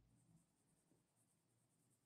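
Near silence, with only the faint scratch of a colored pencil shading on paper.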